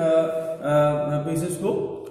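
A man speaking with long drawn-out, held vowels, in two stretches with a short break between them.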